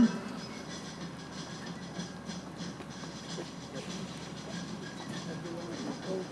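Steady outdoor background noise: a low, even rumble and hiss at a moderate level, with no distinct events.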